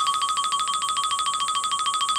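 Electronic suspense sound effect: a rapid, even trill of beeps on one high tone, starting and stopping abruptly.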